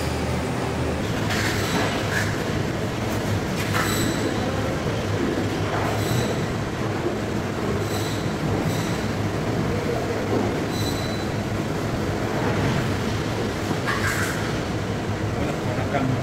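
Steady low machinery hum from processing-room equipment, with a few short, high-pitched clinks scattered through it.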